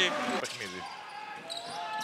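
Basketball arena game sound: a steady background of crowd and court noise, quieter after a commentator's voice trails off in the first half-second.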